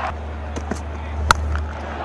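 A single sharp crack of a cricket bat striking the ball, about a second and a half in, over a steady low background hum.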